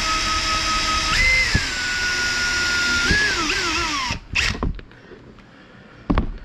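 Cordless drill running, boring a small hole through a plastic tab. Its motor whine rises in pitch about a second in, holds, then wavers as the bit works through, and winds down about four seconds in. A short knock follows.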